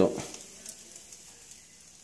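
Faint sizzling and crackling of vegetables grilling on a wire grate over glowing charcoal, with a few small ticks. A voice finishes a word at the very start.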